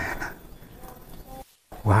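A man's short voiced exclamations, one right at the start ("nah") and a loud "wah" near the end, with faint low noise between them.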